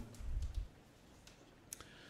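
A low thud in the first half second, then quiet room tone with a few faint clicks.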